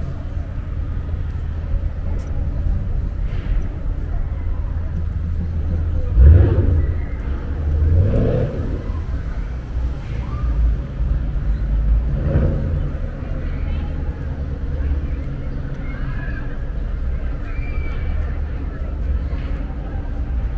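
City street traffic: a steady low rumble, with a vehicle passing loudly about six seconds in and rising in pitch as it accelerates, and another passing around twelve seconds. Passers-by talking can be heard over it.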